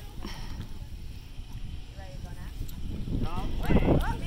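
Wind rumbling and buffeting on the microphone, with an indistinct voice that gets louder in the last second.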